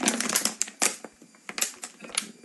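Thin plastic water bottle crackling as it is handled and squeezed: a run of sharp, irregular crinkles with short quiet gaps.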